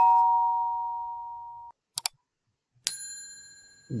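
Subscribe-button animation sound effects. First a two-note electronic chime rings and fades within about two seconds. Then a short click comes at about two seconds, and a bright bell ding nearly a second later fades away.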